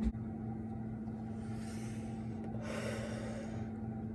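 A steady low hum of room tone, with two soft rushes of noise near the middle, the second one longer and fuller.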